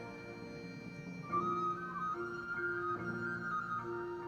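High school marching band playing softly: a big chord dies away, then about a second in a quiet high melody line enters over held low notes.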